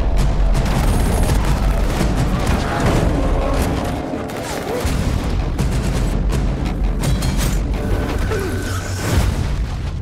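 Action film trailer soundtrack: loud music layered with deep booms and a run of sharp crashing impacts.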